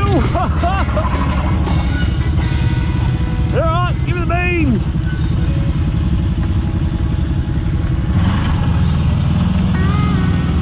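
Off-road vehicle engines, quad bikes and a CFMoto UForce side-by-side, running at low speed with a steady low drone. A few short pitched sounds that rise and fall in pitch break through near the start and again about four seconds in.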